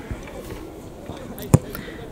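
A football struck once by a boot as a free kick is taken: a single sharp thud about one and a half seconds in, over faint outdoor background noise.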